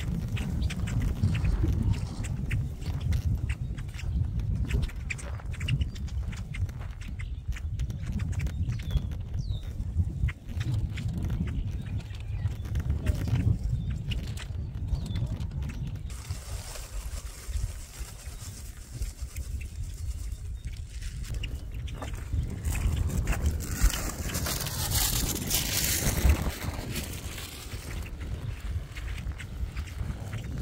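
Gusty wind rumbling on the microphone throughout, with a flock of great-tailed grackles calling over it; their higher, louder calls swell for a few seconds near the end.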